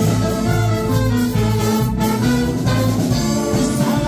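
A big band plays an instrumental passage of a trot song over a steady beat, with a saxophone section to the fore, backed by brass, drums and bass.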